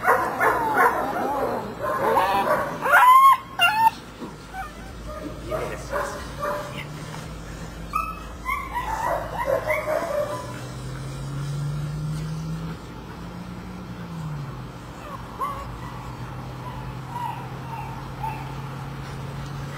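German Shepherd puppies yipping, whining and barking as they play at tug with a rag toy, busiest and loudest in the first four seconds with a few sharp yelps, then another run of yips about halfway through. A low steady hum runs under the second half.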